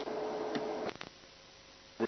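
Broadcast audio cutting in and out: about a second of hiss with a steady hum tone and two clicks, then it drops out to dead silence.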